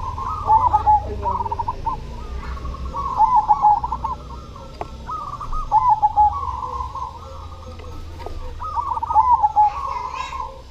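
Zebra dove (perkutut) singing: four phrases of quick, short coo notes, about one every three seconds.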